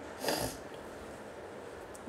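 A single short breath by the narrator, about a quarter second in, then low steady room hiss.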